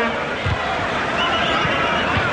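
Football stadium crowd noise: a steady din of many voices with shrill rising and falling calls or whistles, and a short low thump about half a second in.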